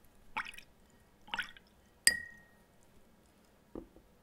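A watercolour brush is swished twice in a jar of rinse water and then tapped once on the glass rim, a sharp click with a short ringing ping. A soft knock follows near the end.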